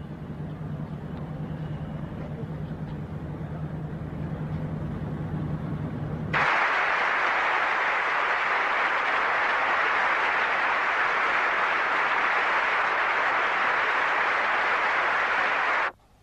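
A low steady hum under background noise, then, about six seconds in, a large indoor crowd breaks into loud, sustained applause that holds steady.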